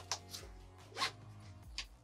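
Four short scraping sounds, the loudest about a second in, as a tent trailer's aluminium roof crossbar is pushed straight in its clamp against the tent fabric, over faint background music.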